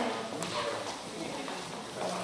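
Dance footsteps on a wooden floor: high heels and shoes tapping and scuffing as a couple dances salsa, with one sharp heel tap about half a second in, over murmuring voices.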